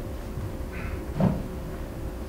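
A single dull thump a little past the middle, over a steady low hum in the room.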